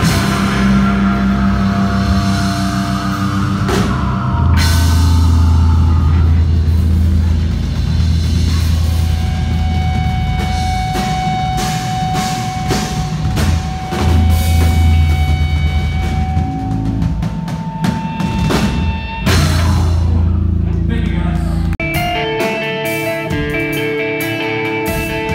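Live rock band playing loud, with heavy bass notes, a drum kit with cymbal hits and guitar. About two seconds before the end the deep bass drops away and held guitar notes come to the fore.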